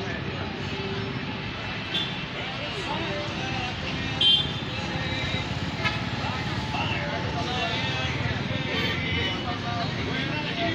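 Street ambience: a steady rumble of passing road traffic with indistinct voices of people talking nearby, and a brief louder sound about four seconds in.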